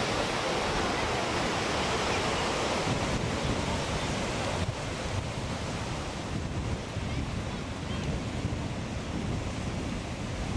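Ocean surf washing onto the beach, with wind buffeting the camcorder microphone. About halfway through the sound turns duller and a little quieter.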